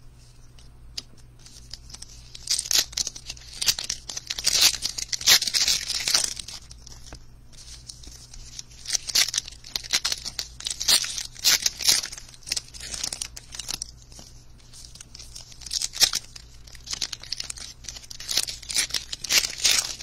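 Baseball card pack wrapper being torn open and crinkled by hand, in three spells of crackly rustling with quieter pauses between.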